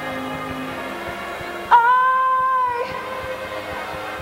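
Steady held chords, then a little under halfway through a woman's voice scoops up into one long, high sung note that is held for about a second before breaking off.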